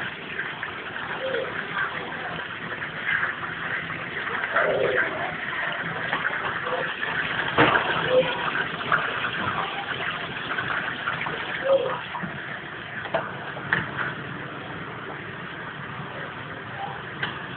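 Potato chips frying in the hot oil of a fish-and-chip shop deep fryer: a dense, steady sizzle with many small pops.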